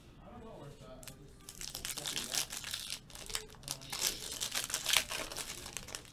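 Foil trading-card pack being crinkled and torn open by hand: a run of sharp crackles and rips that starts about a second and a half in.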